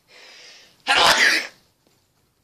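A man sneezes once: a short breath drawn in, then a sudden loud sneeze about a second in that quickly dies away.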